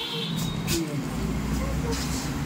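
Indistinct voices over a low, steady rumble like passing road traffic, with a couple of sharp clicks about half a second in.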